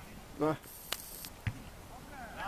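A player's short shout on the pitch, followed by a brief hiss and, about one and a half seconds in, a dull thump of a football being kicked.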